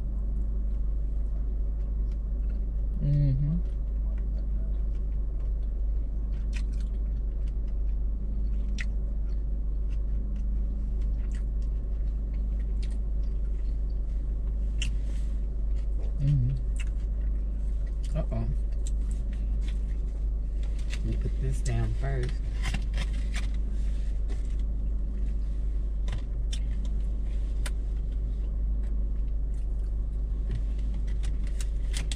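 Steady low rumble inside a stationary car's cabin, with scattered clicks and crackles of chopsticks and a plastic sushi tray while someone eats. A few brief hums of a voice come about 3, 16, 18 and 22 seconds in.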